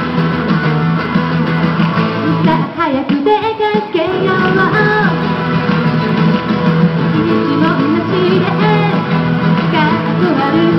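A woman singing a melody into a handheld microphone over guitar accompaniment.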